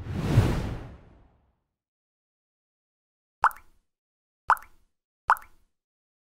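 Animated end-screen sound effects: a whoosh that fades out over about a second, then three short pops about a second apart near the end as the like, subscribe and bell buttons pop into view.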